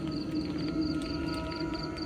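A low, steady, eerie drone with a few held higher tones, like ambient horror background music, over a cricket chirping in a steady rhythm of about four chirps a second.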